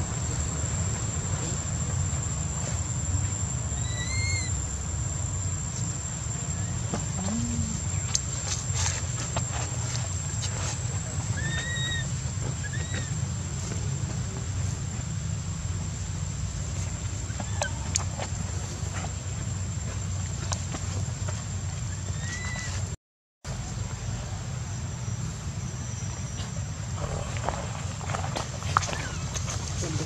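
Short, arched squeaking calls of an infant long-tailed macaque, a handful spread a few seconds apart, each rising and falling in pitch. They come over a steady low rumble and a continuous thin high whine.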